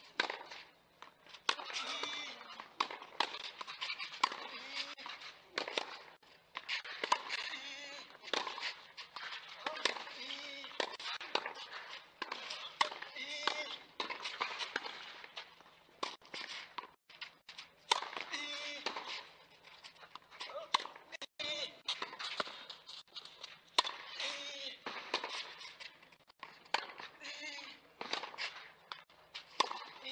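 People talking throughout, no words clear enough to make out, over a low steady hum, with a few sharp knocks around the middle.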